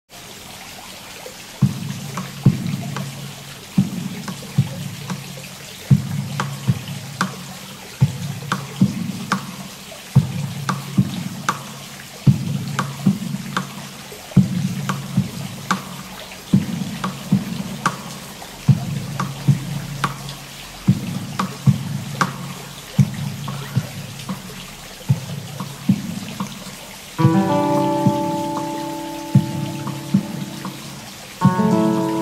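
Acoustic guitar playing a repeating low plucked arpeggio pattern, looped through a looper pedal, each note starting with a sharp attack. Near the end, a layer of higher sustained notes joins over the loop.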